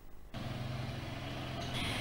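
Street traffic sound with small motor scooter engines running, starting about a third of a second in as a steady low hum.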